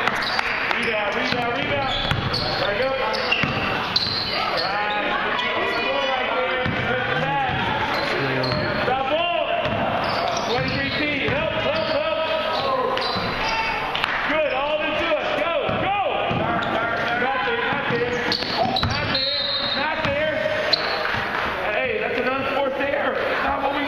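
A basketball bouncing on a gym's hardwood floor during live play, with sharp impacts throughout, over a steady mix of indistinct voices from players and spectators in the hall.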